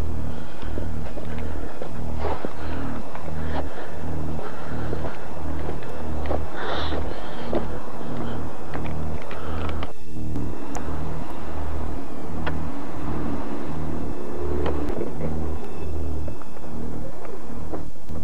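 Horror film score: a low, throbbing bass pulse repeating about twice a second, with scattered crackling noise above it.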